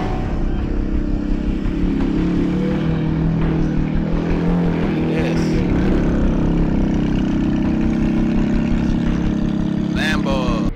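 A car engine running with a steady low rumble.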